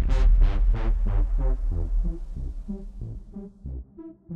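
Electronic music: synthesizer notes repeating over a heavy pulsing bass, loud at first and easing off in the second half.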